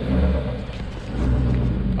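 A car engine idling with a steady low rumble, under an even outdoor hiss.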